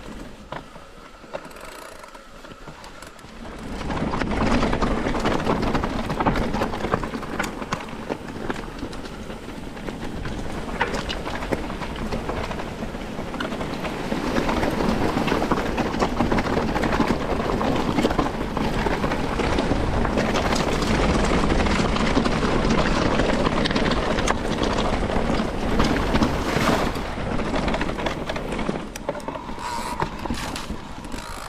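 Mountain bike rolling fast over rough ground: continuous tyre noise with dense rattling and clicking from the bike, jumping up in level about four seconds in.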